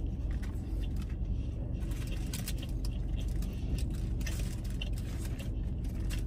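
Crunching bites and chewing of a Doritos-shell taco, with the paper wrapper rustling now and then, over a steady low hum inside a car.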